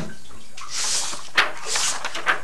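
Paper sheets being handled and shifted close to the microphone: rustling hiss in short swells, with a sharp paper crackle about one and a half seconds in.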